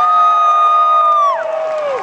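Audience cheering, with two high-pitched screams held for about a second and a half before they trail off.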